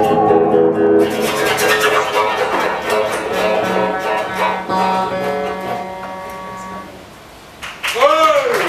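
A live band's final chord: a held sung note ends about a second in as the guitars strike a last chord. The chord is left ringing and fades away over the next several seconds.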